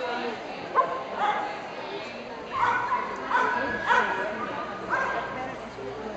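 A dog barking, four short yipping barks spaced under a second apart in the second half, with one sharp yelp about a second in.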